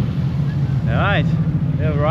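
A car driving with its engine and road noise making a steady low drone. A brief bit of speech comes about a second in and again near the end.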